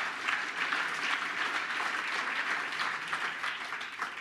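Audience applauding steadily, easing slightly near the end.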